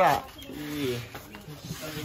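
Speech only: one spoken word trails off right at the start, followed by quieter talk.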